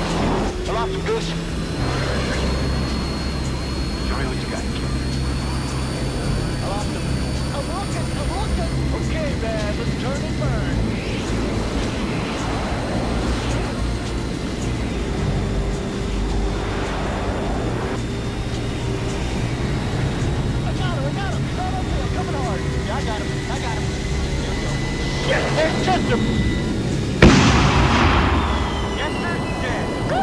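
Film soundtrack of a jet dogfight: a dramatic score with stepping low notes under several jet fly-by sweeps, and a sudden loud blast about 27 seconds in that dies away over a few seconds.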